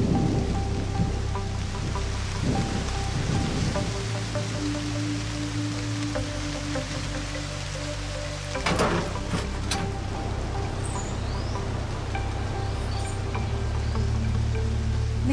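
Steady rainfall hiss under a slow background music score of held notes, with a brief louder surge about nine seconds in.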